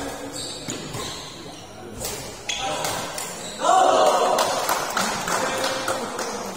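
Badminton rackets striking a shuttlecock in a fast doubles rally, a few sharp hits echoing in a sports hall, followed about halfway through by loud shouting voices as the rally ends.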